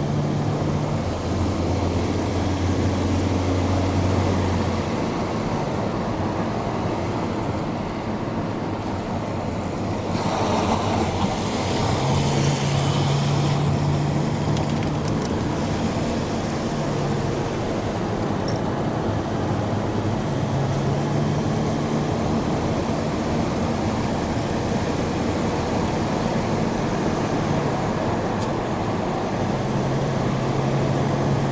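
Car engine and tyre noise heard from inside the cabin. The low engine hum steps up and down in pitch every few seconds as the car takes the bends, with a brief rush of noise about ten seconds in.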